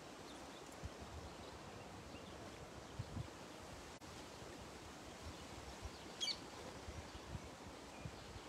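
Quiet outdoor ambience at the water's edge: a steady hiss with scattered soft low thumps on the microphone, and one short bird chirp about six seconds in.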